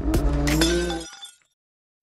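Logo intro sound effect: a produced sting with a sharp crash and glassy, tinkling ringing over a low hum, fading out just over a second in.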